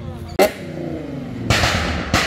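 A modified car's exhaust giving a single sharp bang less than half a second in. The engine's revs then fall away, and a longer loud noisy burst of exhaust comes near the end.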